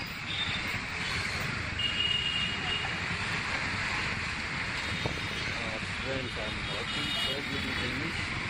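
Bajaj Pulsar NS motorcycle riding through city traffic: a steady rush of engine, road and wind noise, with a brief high-pitched vehicle horn about two seconds in and again around seven seconds.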